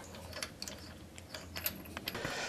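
Faint scattered metallic clicks and ticks of lug nuts being spun off a car's wheel studs by hand.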